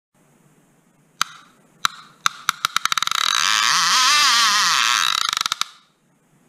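Intro sound effect: a few sharp clicks, spaced at first, that speed up into a loud rushing whoosh with a warbling tone, then slow back to single clicks and fade away.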